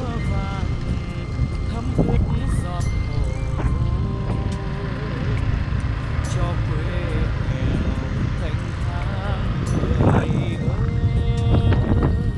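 Continuous low wind rumble on the microphone of a moving ride, under background music with a singing voice.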